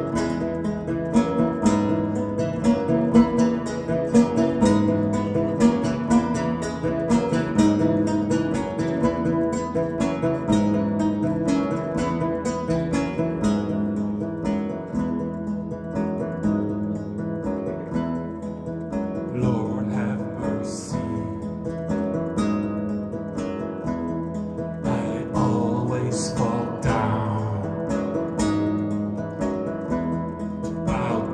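Lute played live as a solo instrument: a quick, steady stream of plucked notes repeating a pattern over recurring low bass notes.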